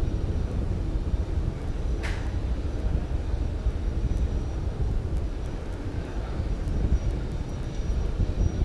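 Falcon 9 first stage's nine Merlin engines burning in ascent, heard as a steady, deep, noisy rumble.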